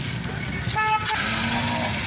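A vehicle horn gives one short toot about a second in, over a steady background of voices and traffic.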